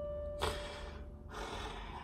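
A single held electronic keyboard note fading away, followed about half a second in by a short breathy exhale near the microphone.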